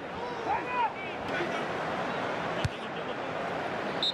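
On-pitch sound of a football match in an empty stadium: players' shouted calls over a steady hiss of ground ambience, and one sharp ball kick a little past the middle.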